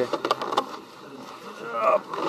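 A few sharp clicks and knocks in the first half second, then a short rising vocal sound near the end, as a fallen rider is pulled up off the snow.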